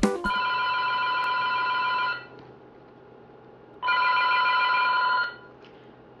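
Telephone ringing twice: two rings of about one and a half to two seconds each, with a short pause between. It stops just before the call is answered.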